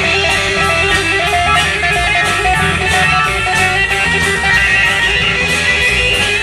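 Live band playing an instrumental passage: electric guitar over bass guitar and drums, with a steady beat of cymbal ticks several times a second.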